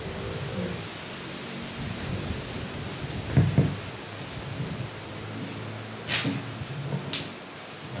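Steady hiss of room noise picked up by a handheld microphone, with a few short rustles about three and a half, six and seven seconds in.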